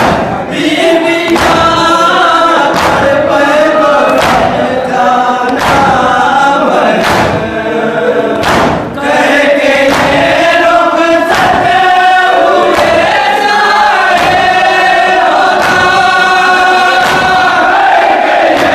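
A crowd of men chanting a Shia noha (mourning lament) in chorus behind a lead reciter on a microphone, with loud unison chest-beating (matam) landing about every one and a half seconds.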